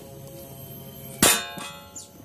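A single sharp metallic clang about a second in, ringing briefly as it fades: a metal tool or part struck against metal while working on the scooter's opened CVT case.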